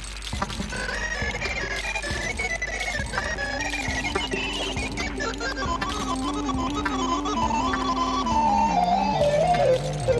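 Live experimental electronic music from a modular synthesizer: a high synth line steps around in pitch, a lower one joins a few seconds in, and near the end both step downward in pitch, over a dense scatter of clicks.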